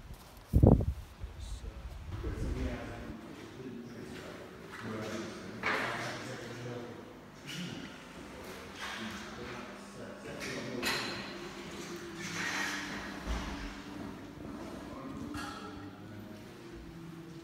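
A loud thump and wind buffeting the microphone at first, then footsteps knocking on a hard floor and indistinct voices echoing in a large room.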